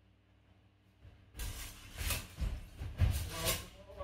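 A run of loud, hissing scuffs and rustles from sparring fencers moving close to the microphone, starting about a second and a half in and coming in four or five surges.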